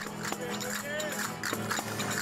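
Outdoor traditional folk music from a street dance group: a guitar with a held, gliding melody line over it and scattered sharp clacks, with crowd voices underneath.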